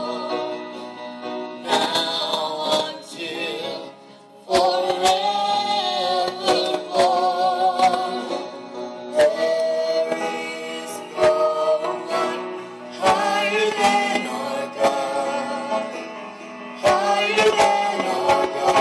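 Live gospel choir music: a choir singing held, swelling harmonies with a woman soloist on a microphone, over instrumental accompaniment with scattered drum hits.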